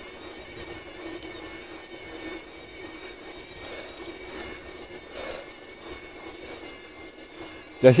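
Electric bicycle drive motor running under pedal assist, a steady whine at a constant pitch, with birds chirping in short, high downward notes now and then.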